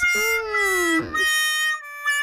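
An edited-in cartoon sound effect: a whining note that slides downward for about a second, then a steady electronic tone with a fast warble.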